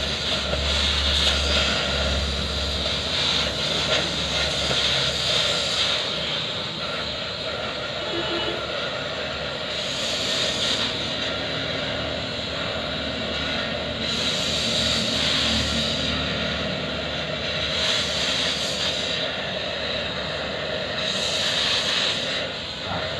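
Oxy-fuel gas cutting torch hissing steadily as its flame and oxygen jet cut into a steel gear, the hiss growing brighter and duller every few seconds.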